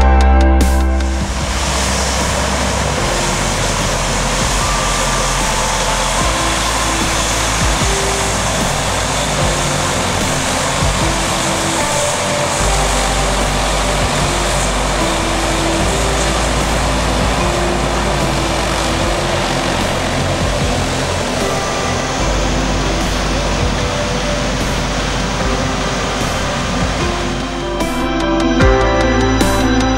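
Antonov An-22's four Kuznetsov NK-12 turboprops with contra-rotating propellers running as the aircraft taxis: a loud, steady, dense propeller and engine noise with a low rumble underneath.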